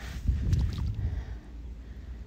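Wind rumbling on the microphone, with a few soft rustles and knocks in the first half second or so.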